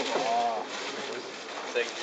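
A person's voice: a drawn-out vocal sound of about half a second that rises and then falls in pitch near the start, followed by the word "thank" near the end.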